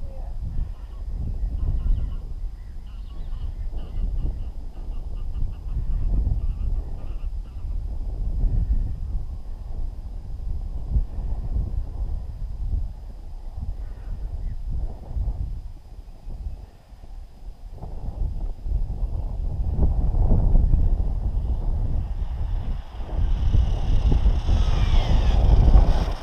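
Wind gusting on the microphone, an unsteady low rumble that swells and fades. In the last few seconds a faint high whine that wavers in pitch rises over it: the X3 Sabre RC buggy's brushless electric motor as the buggy drives back up close.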